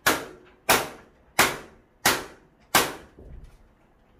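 Five sharp knocks, evenly spaced about two-thirds of a second apart, each with a short ring: a hand striking the end of a combi blind's headrail to seat it in its mounting brackets.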